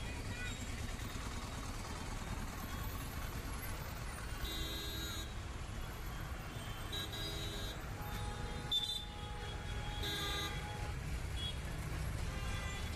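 Dense city traffic rumbling at crawling pace, with vehicle horns honking several times, about four short and medium honks in the second half.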